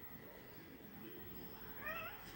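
A domestic cat giving one short, faint, rising meow near the end, over quiet room noise.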